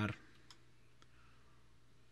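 The tail of a spoken word, then near silence with a single faint click about half a second in and a fainter tick about a second in.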